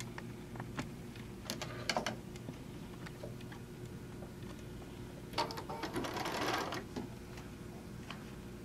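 Sewing machine in use: a few sharp clicks in the first two seconds as the fabric is set under the presser foot, then a short run of stitching starting about five and a half seconds in and lasting about a second and a half.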